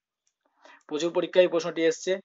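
A voice speaking, starting just under a second in after a brief silence.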